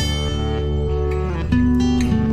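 Background music with strummed guitar chords; a new chord is struck about one and a half seconds in.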